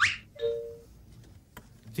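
A quick rising whoosh, then a short two-note ding-dong chime, the higher note first, like a doorbell. It is a sound effect laid over the pause before the contestant sings.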